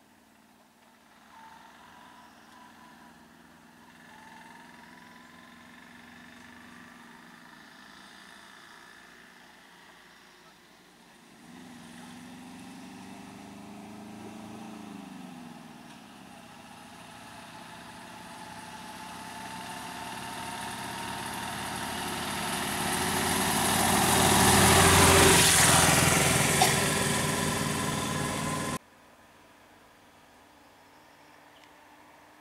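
Road vehicles' engines running: one revs up and back down about twelve seconds in, then traffic draws closer and passes, growing steadily louder to its loudest about twenty-five seconds in. The sound cuts off suddenly near the end.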